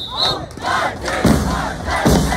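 A last short whistle blast, then band members shouting together in unison, a loud group yell.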